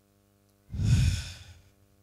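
A man's single sigh, a breathy exhale close to a handheld microphone, lasting just under a second near the middle.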